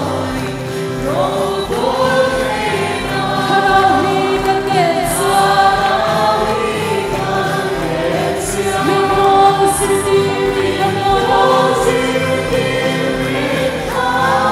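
A congregation singing a gospel worship song together over musical accompaniment.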